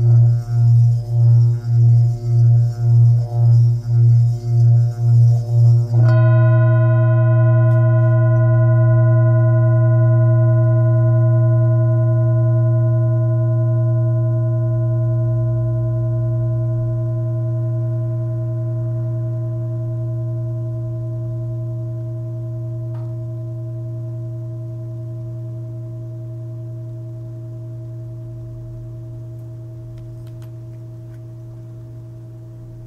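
Antique singing bowl with a low fundamental near 116 Hz, sounded by rubbing a mallet around its rim: a deep hum pulsing about twice a second under a scratchy rubbing hiss. About six seconds in the rubbing stops, and the bowl rings on freely with several clear overtones, slowly dying away.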